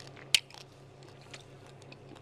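A person chewing a mouthful of glazed pork rib, quietly and with the mouth covered, with one sharp click about a third of a second in.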